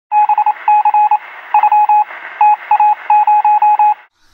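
Loud electronic beeps, all at one pitch, keyed on and off in quick irregular groups of short and longer tones, with a hiss behind them and a thin, telephone-like sound.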